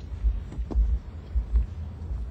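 A series of low, dull thumps, about five in two seconds, with nothing sharp or high in them.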